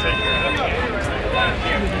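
People talking nearby, voices over a steady low rumble.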